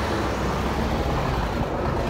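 Steady city street traffic, with a city bus and cars running past close by.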